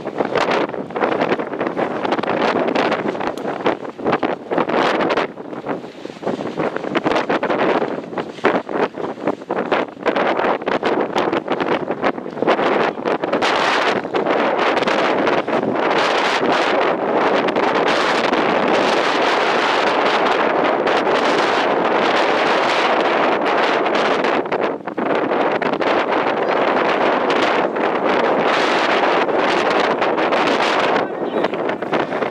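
Wind buffeting the camera microphone in loud, uneven gusts, settling into a steadier rumble over the second half.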